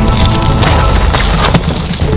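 Film score mixed with a dense layer of noise and several sharp crack-like impacts, the strongest about one and a half seconds in.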